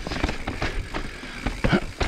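Evil Wreckoning LB full-suspension mountain bike rattling over rocks: a fast, irregular run of sharp knocks and clatter from tyres striking stone and chain and frame clanking, over a low rolling rumble.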